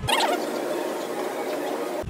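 The quartz hand motors of a Casio G-Shock MTG-B2000 whirring steadily as the hands sweep round. The hands are shifting to swap home time and world time after the setting is sent from the phone app. A short rising chirp opens the sound.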